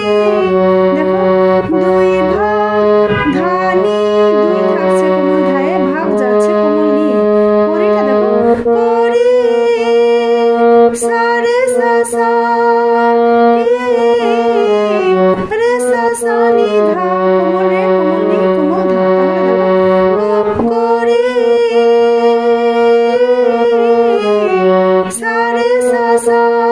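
Harmonium playing a melody of sustained reed notes that move in steps, over a low held note that shifts pitch a few times.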